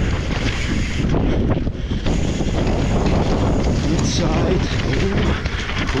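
Wind rushing over the camera microphone at riding speed, mixed with mountain bike tyres rolling over dry dirt and the bike rattling and knocking over bumps and roots on a fast descent.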